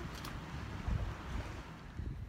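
Wind on the microphone: a low rumble with a hiss above it.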